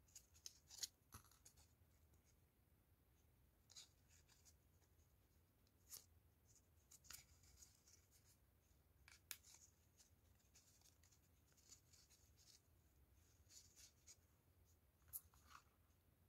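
Near silence, broken by faint, scattered clicks and rustles of hands handling and pressing thin foam (foamiran) petals onto a rose.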